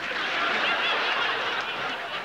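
Live audience laughing together.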